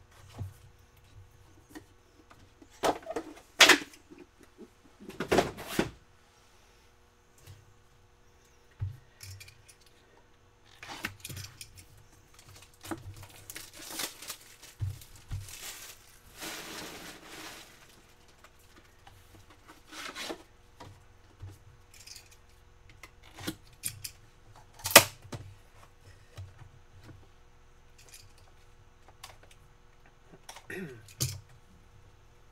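Hands handling cardboard trading-card boxes and packs: scattered knocks and scrapes of box lids and packaging, with a longer rustling tear in the middle and a sharp knock near the end.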